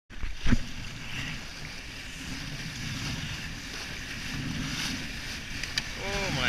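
Wind noise on the microphone and water rushing along the hull of a small sailboat sailing fast in high wind, with a sharp knock about half a second in.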